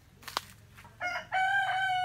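A chicken crowing, starting about a second in: a short note, then one long held note that falls slightly in pitch.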